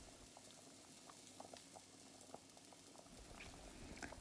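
Faint, irregular popping and bubbling of thick lentil-and-vegetable sambar boiling on high heat in an open pot.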